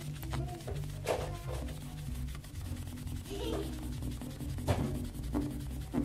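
A wet wipe rubbed back and forth over a metal panel radiator in repeated scrubbing strokes to lift permanent marker, the marker coming off.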